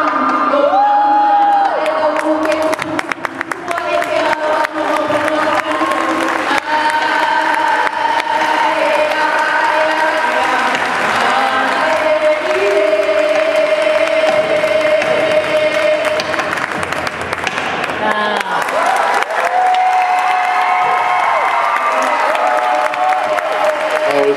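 A group of voices chanting a Hawaiian chant in long held notes, over crowd cheering and applause.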